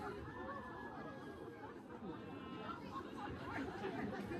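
Faint chatter of people in a crowd, with voices murmuring at a distance.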